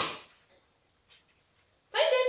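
Dog giving a short, sharp bark at the start, then a high-pitched yelp right at the end.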